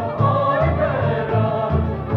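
A group of voices singing a song together, accompanied by clarinet and violin over a regular bass pulse of about two low notes a second.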